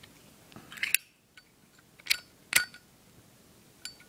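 Metal lighter cases clinking against each other as they are handled: three sharp metallic clinks in the first three seconds and a fainter one near the end.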